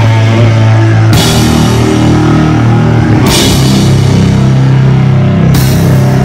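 Live doom/sludge metal band: heavily distorted electric guitar through an Orange amp stack and bass holding long, heavy low chords, with drums and cymbal crashes about a second in, about three seconds in, and near the end.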